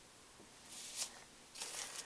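Two brief, soft crinkly rustles, about a second in and again near the end, from a hand handling the icing piping bag and cupcake.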